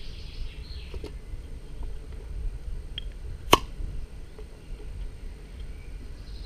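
Glass beer bottles knocking in a homemade six-bottle carrier as they are handled: a couple of faint knocks, then one sharp clink about three and a half seconds in, over a low steady rumble.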